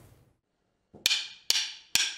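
Near silence for about a second, then a pair of wooden drumsticks clicked together three times, about half a second apart, counting in a song.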